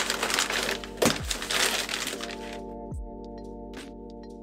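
Crinkling of a kraft-paper parcel wrapping and snips of scissors cutting its plastic strapping for the first two seconds, over background music with a steady kick-drum beat that carries on alone after the rustling stops.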